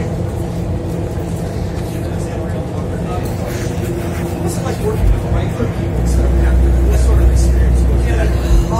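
Indistinct chatter in a crowded press room over a steady low hum, with a heavy low rumble coming in about six seconds in.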